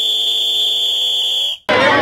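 A steady, high-pitched electronic beep held as one long tone, cutting off suddenly about one and a half seconds in. People's voices follow near the end.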